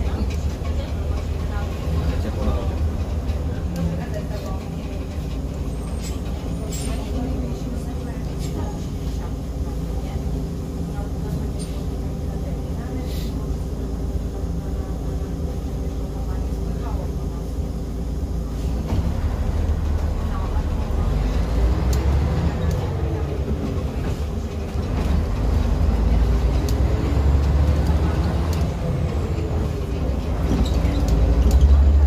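Interior sound of a Jelcz 120M/3 city bus, heard from near the front of the cabin: the engine runs with a steady low hum, then grows louder in the second half, with whines that rise and fall twice as the bus accelerates.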